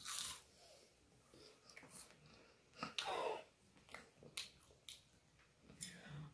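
Faint chewing of a puffed Cheez-It cracker, with a few light, scattered crunches and a short breath-like burst at the first bite. A brief vocal sound comes about three seconds in.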